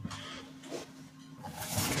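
Quiet room tone with a faint steady hum and soft movement noises, growing louder near the end as a hand comes close to the camera.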